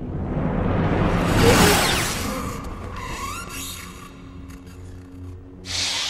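Dark orchestral film score under a lightsaber swing sound effect that swells into a loud swoosh about a second and a half in and then dies away. A short burst of hiss comes near the end.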